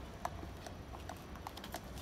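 Spoons stirring a paste of coconut oil and baking soda in small glass jars: light, irregular clicks and taps of metal on glass.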